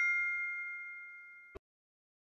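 Ringing tail of a bright two-note ding sound effect for an animated subscribe button, fading steadily. About a second and a half in, a short click cuts it off.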